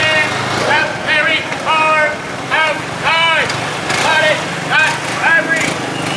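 A loud, high-pitched voice shouting in short phrases that rise and fall, one after another, over the low hum of motor scooter engines.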